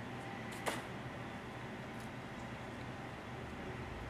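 Quiet handling of a thin die-cut carbon fiber sheet, with one short sharp click about two-thirds of a second in and a fainter tick later, over a steady low room hum.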